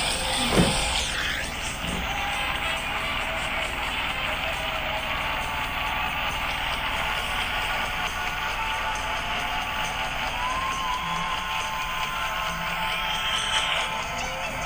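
Seoul Metro Line 4 subway train running: a steady rumble and hiss with motor tones slowly sliding up and down in pitch, and a single knock about half a second in.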